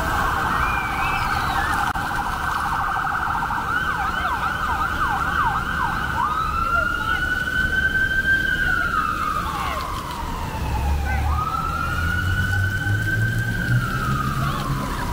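Emergency vehicle siren: a fast warbling yelp for about the first six seconds, then a slow wail that rises, holds and falls, twice over.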